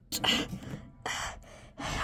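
Three short, breathy gasps from a person, without voiced speech.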